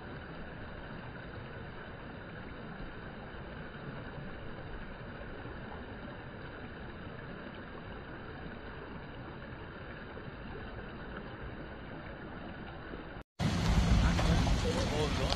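Steady outdoor background noise with no distinct events. Just after 13 s it cuts out for an instant, and a much louder, fuller sound takes over.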